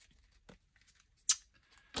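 Quiet handling noise on a tabletop, with one brief, sharp rustle a little over a second in.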